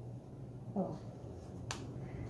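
An elastic hair tie snapping once as it is looped around a ponytail: a single sharp snap near the end.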